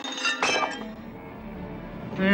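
A bright glassy clink about half a second in, ringing briefly, over soft background music.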